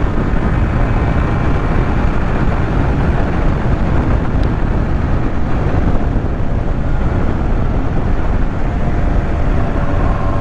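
Honda NS250R's two-stroke V-twin engine running under way at a steady pitch, mixed with wind rushing over the microphone.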